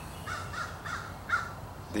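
A bird calling outdoors: four short calls in quick succession, over a low steady background hum.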